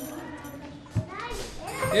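Indistinct chatter of several people, a child's voice among them, with a brief knock about a second in.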